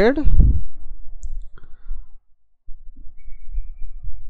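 Computer mouse clicking twice, about a second and a half in and again about three seconds in, over a faint low hum.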